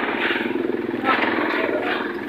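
A motor vehicle engine running steadily close by, with a fast even pulse, under people talking.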